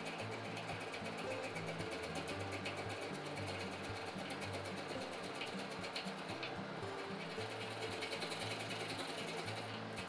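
Cucumber being grated by hand on a flat stainless-steel grater: quick, continuous rasping strokes of the flesh against the metal teeth. Soft background music with a bass line plays underneath.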